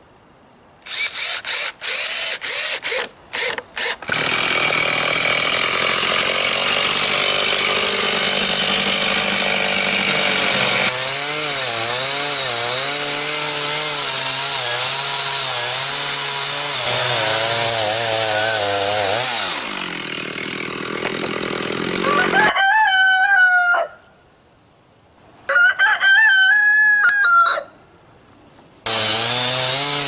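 A cordless drill driving screws in several short bursts, then a Stihl chainsaw in a chainsaw mill ripping a cherry log into boards, its engine pitch wavering under load and then dropping. Near the end there are two short, high warbling sounds, broken off by abrupt cuts.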